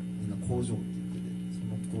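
Steady electrical mains hum from the band's amplification, a constant low buzz with overtones, under a few brief murmured words.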